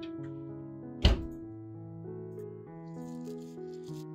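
Background music with sustained notes throughout; about a second in, a single loud thunk of the oven door being shut on the baking pan.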